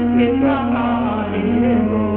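Indian devotional song (bhajan): an ornamented melodic line that bends up and down over a steady drone.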